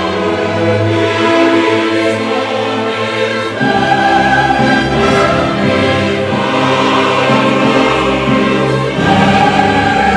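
Mixed choir singing sustained chords with orchestra in a late-Romantic cantata; the harmony shifts and a fuller bass comes in about a third of the way through.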